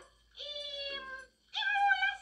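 A high, held voice-like call, heard as a film soundtrack played through a monitor. It comes in two steady-pitched stretches, starting about a third of a second in, with a short break just past a second.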